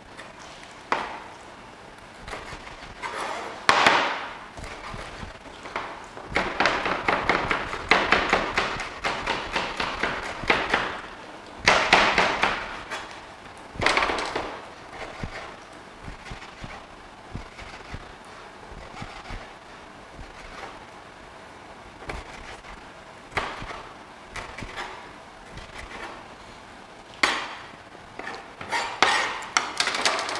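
Chef's knife chopping leeks on a plastic cutting board. The quick blade strikes come in runs with short pauses, the longest run about six seconds in.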